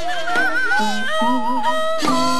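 Korean traditional accompaniment music for the seungmu (monk's dance). Melodic instruments hold long notes with a wide, slow wavering vibrato, and a few sharp percussive strokes fall under them.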